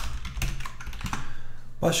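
Computer keyboard typing: a run of irregular keystroke clicks as a line of code is entered.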